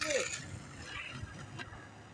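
Skateboard wheels rolling on concrete, fading as the rider moves away, with a few faint ticks; a short voice ends right at the start.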